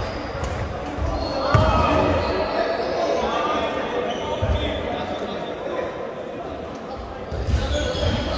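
Badminton in a sports hall: a sharp racket hit about a second and a half in, and dull thuds of footsteps on the court floor. Voices echo around the large hall throughout.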